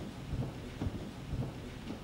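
Low, muffled thuds about twice a second over a rumble: a handheld camera being jostled as it is carried through a standing crowd.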